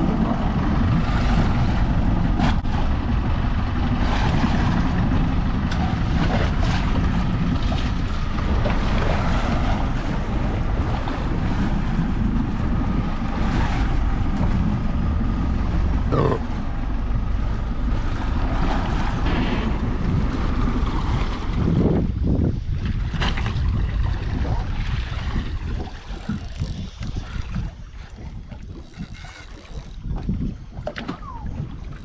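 Wind buffeting the microphone over water against the hull of a drifting boat, a steady low rumble with a few knocks. The wind noise eases off near the end.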